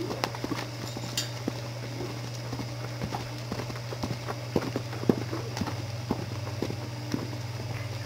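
Hoofbeats of a horse cantering on dirt footing: a quick, uneven run of soft thuds, over a steady low hum.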